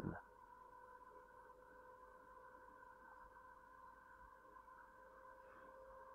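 Near silence: faint room tone with a steady low hum of a few thin, constant tones.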